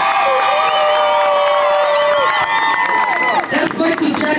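A large crowd of spectators cheering and screaming, many held high-pitched yells overlapping, dying away about three and a half seconds in.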